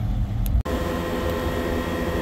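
A low outdoor rumble cuts off abruptly about half a second in. It is replaced by a steady mechanical hum with several constant tones, coming from beside a parked semi truck.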